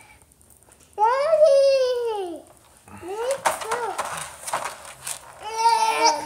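A toddler's wordless, high-pitched straining vocal sounds while pulling in a tug of war with a puppy: one long drawn-out cry about a second in that falls away at its end, a shorter one about three seconds in and another near the end, with short scuffling noises in between.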